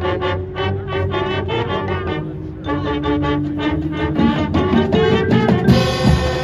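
High school marching band playing its field show: short repeated brass chords at first, then long held notes, with drums coming in about four seconds in and a bright crash near the end.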